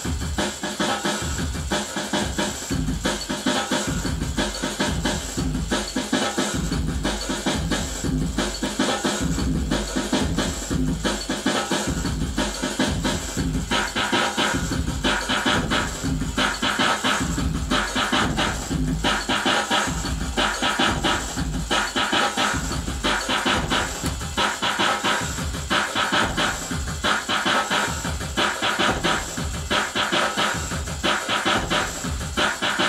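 Drum and bass groove from a Boss DR-202 groovebox: fast, busy electronic drums over a deep bass line, running on without a break. About halfway through, the upper drum parts get brighter and louder.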